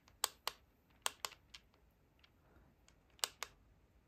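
Keys on a handheld's keyboard of bare tactile push-button switches, with no keycaps fitted, being pressed one at a time: a scattered run of sharp clicks, several in quick pairs.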